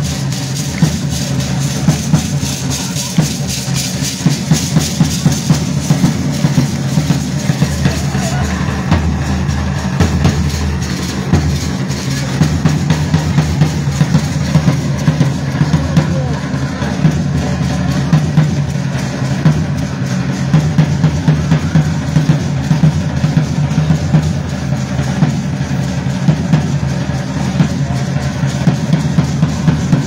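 Large bass drums beaten in a steady, driving dance rhythm, with voices in the background.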